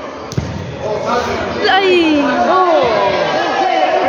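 One sharp thud of the futsal ball on the court a moment in, followed by several spectators' voices shouting over one another.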